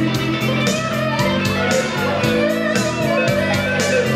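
Live band music without vocals: an electric guitar plays a lead line with notes that bend in pitch, over steady bass notes and a regular beat.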